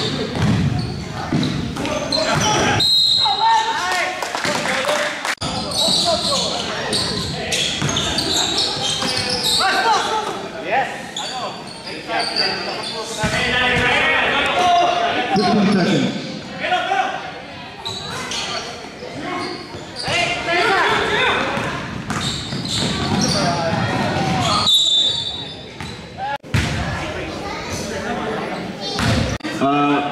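Basketball being dribbled and bounced on a gymnasium hardwood court during a game, mixed with players' voices in the echoing hall.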